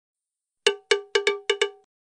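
A short intro sound effect: six quick struck notes at the same pitch, each ringing briefly and dying away, in a skipping rhythm of single and paired strokes.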